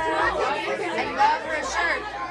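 Several people talking over one another: indistinct backstage chatter.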